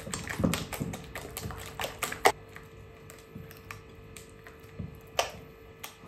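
Silicone spatula stirring mashed banana and eggs in a glass mixing bowl, tapping and clicking irregularly against the glass, with a louder knock a little past two seconds and another about five seconds in.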